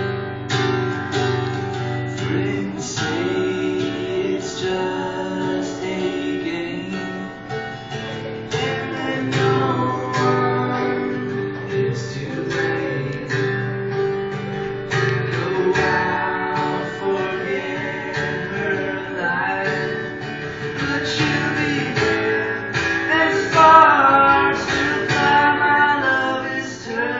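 Acoustic guitar strummed in a steady rhythm, an instrumental passage of a folk-country song played live.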